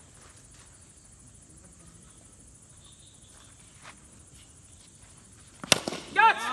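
Low open-air background, then near the end a single sharp crack of a cricket bat striking the ball.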